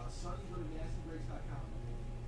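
A voice speaking quietly, the words unclear, for about a second and a half, over a steady low electrical hum.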